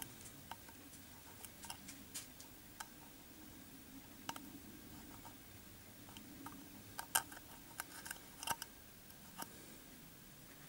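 Faint, scattered clicks and scrapes of a pin poking into the jet holes of a brass Trangia spirit burner to clear a clogged jet, the clearest few about seven and eight and a half seconds in.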